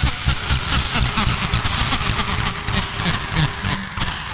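Pre-recorded cassette tapes playing back through the two portable cassette players of a Tapetron-2 tape-sampler module, their motor speeds being turned by hand so the recording is bent into a dense, low, pulsing rumble with irregular clicks.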